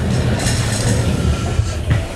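Low rumbling and rubbing noise from a phone's microphone being handled as the phone is picked up and moved; it stops suddenly near the end.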